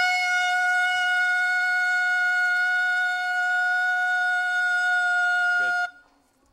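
Air horn sounded in one long steady blast of about six seconds as a morning wake-up signal for late sleepers, dipping in pitch at the very start and cutting off suddenly near the end.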